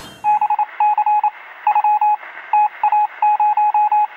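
Electronic beeps at a single pitch in quick clusters of short and longer tones, a sound effect playing under a channel logo ident.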